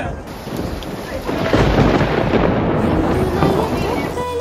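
Heavy rain falling, with a deep rumble swelling about a second and a half in and easing off near the end.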